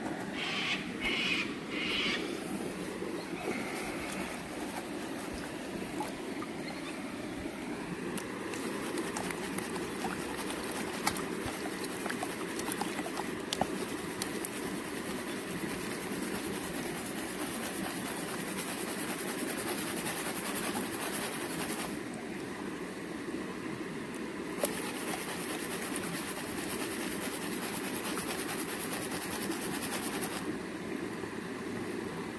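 Steady rushing noise of a gold highbanker's pump and running water, with a few sharp clicks.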